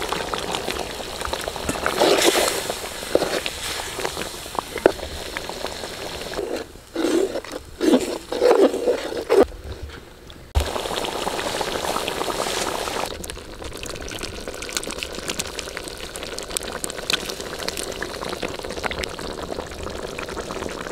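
Boiled jackfruit pieces tipped from a steel bowl into a pot of hot masala gravy, splashing, followed by a perforated steel ladle stirring the thick gravy with clicks against the pot. From about halfway on, a quieter steady bubbling of the gravy cooking.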